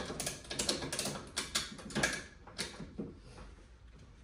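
Ratchet strap being hooked on and cinched down on a transmission: a quick run of metal clicks and rattles that thins out after about three seconds.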